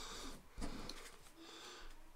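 Faint, soft rustles of collectible game cards being slid and picked up on a play mat, with a soft bump about half a second in.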